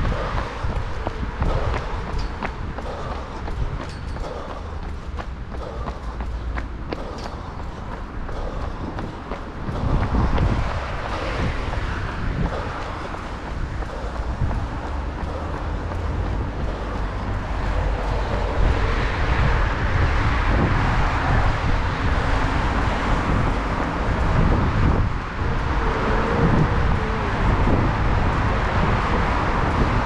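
A runner's footsteps in running shoes on city pavement, with road traffic going by that grows louder over the second half.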